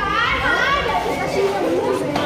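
Many overlapping young voices of onlookers chattering and calling out at once around a taekwondo sparring match.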